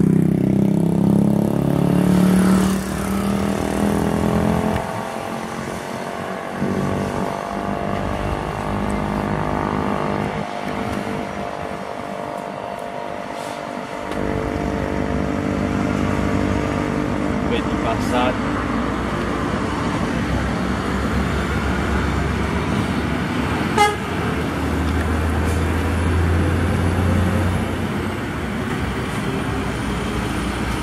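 Heavy diesel trucks, among them a Scania tractor pulling a refrigerated box trailer, passing on a highway: engines running with tyre and road noise, swelling and fading as each one goes by. A short sharp click sounds about 24 seconds in.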